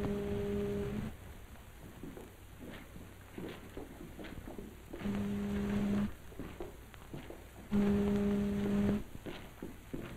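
Ship's foghorn sounding in fog, one low steady blast that ends about a second in, then two more blasts of about a second each, about five and eight seconds in.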